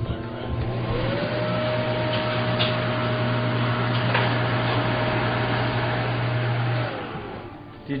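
Salon hood hair dryer running: its fan motor spins up with a rising whine in the first second, blows steadily with a rushing air hiss and a low hum, then winds down and fades about a second before the end.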